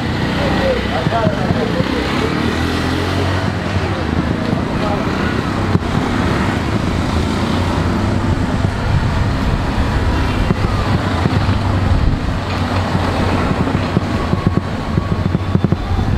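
Street traffic noise, steady throughout, with an auto-rickshaw engine running close by, and voices in the background.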